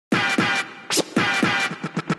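Electronic intro music: a quick run of short sweeps that fall in pitch, like turntable scratches, building toward the full track.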